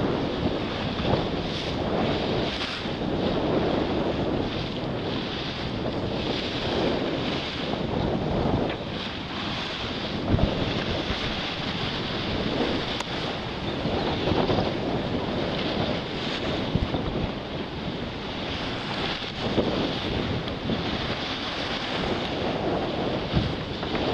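Wind buffeting the microphone over water rushing and splashing along the side of a moving boat, swelling and easing every second or two.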